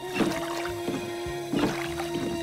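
Cartoon background music with a long held note, over rowboat oar strokes in the water, one near the start and another about a second and a half in.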